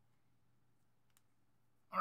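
Near silence: room tone with a low steady hum and a single faint click about a second in, then a man starts speaking near the end.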